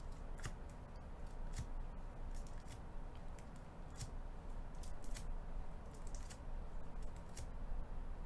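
Rigid plastic trading-card holders knocking and sliding against each other as a stack is handled, giving a dozen or so light, irregular clicks.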